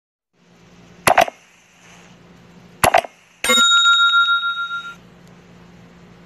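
Subscribe-button animation sound effects: two mouse-click double clicks, about a second in and again near three seconds, then a bright bell ding that rings on and fades out over about a second and a half.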